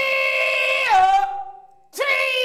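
A woman singing an advertising jingle: one long, high held note that drops to a lower note about a second in and fades away. A new sung phrase starts right at the end.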